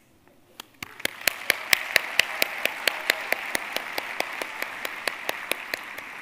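Audience applause that sets in after a short hush about a second in, with sharp single claps close to the microphone standing out over the steady clapping of the crowd.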